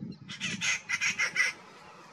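A bird calling: a fast run of harsh, clucking notes lasting about a second, starting just after the start.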